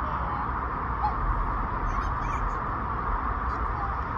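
Steady outdoor background noise with a low rumble, and a few faint, brief high chirps about halfway through.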